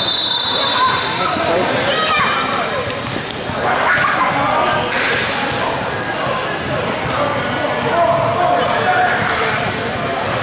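Basketball bouncing on a hardwood gym floor during play, with players' and spectators' voices in the background, all echoing in a large gym.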